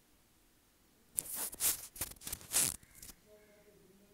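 A spoon scraping and pushing chicken-mayonnaise filling into a crisp, crumb-coated fried bread pocket. It comes as a handful of short crackly scrapes starting about a second in.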